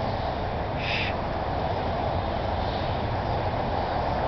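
Steady roar of distant freeway traffic from I-80, with a brief high-pitched sound about a second in.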